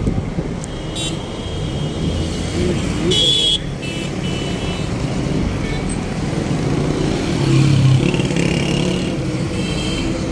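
Urban street traffic heard from a moving vehicle: engines running and road noise. A short high-pitched tone comes a little over three seconds in, and the traffic swells louder about eight seconds in.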